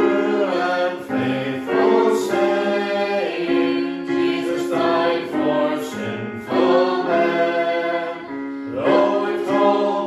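Small mixed group of men's and women's voices singing a hymn in harmony, with held notes in phrases, accompanied by a Casio electric keyboard.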